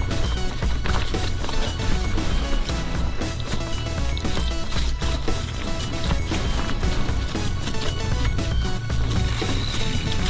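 Mountain bike rattling and clattering over a rocky trail, with frequent sharp knocks over a steady low rumble.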